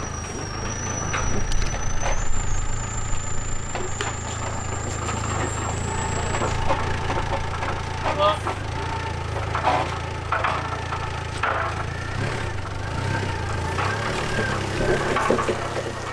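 Komatsu FD20 diesel forklift engine running at a steady idle, with a thin high whine for the first few seconds.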